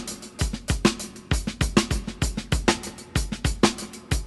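Music: a steady, driving drum-kit beat, with bass drum and snare strikes coming several times a second.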